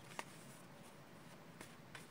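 A deck of tarot cards being shuffled by hand, heard only as a few faint, short card clicks over near silence, the clearest about a quarter second in.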